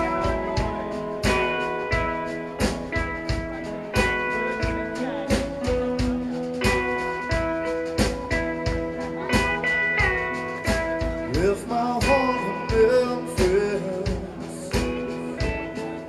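Live blues band playing an instrumental passage: electric guitar lead with bent notes over a steady drum beat.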